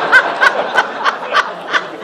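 People laughing at a joke, with one laugh going in quick even 'ha's, about three a second.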